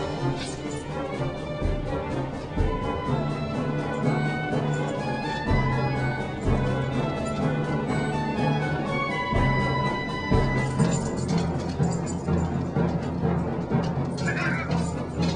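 Orchestral soundtrack music with sustained notes and low drum hits.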